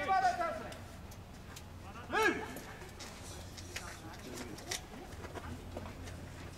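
Baseball players' voices on the field: talk right at the start, then one loud drawn-out shouted call about two seconds in. A few faint clicks follow.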